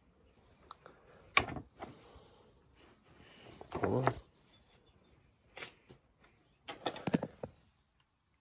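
Hands fitting a foam air filter and handling the plastic air cleaner parts on a Briggs & Stratton V-twin: scattered plastic clicks and rubbing, with a sharp click about a second and a half in and a quick run of clicks near the end.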